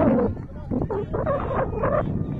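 Raised voices calling out on a playing field, drawn out and unintelligible, in two stretches: one at the start and another from under a second in to the end. A low wind rumble on the microphone runs beneath them.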